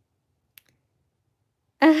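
Near quiet with a single faint, sharp click about half a second in, then a woman's voice starts near the end.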